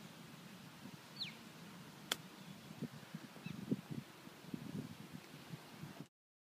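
Quiet open-air background with a bird's short falling whistle about a second in and scattered low calls in the second half. A single sharp click sounds about two seconds in.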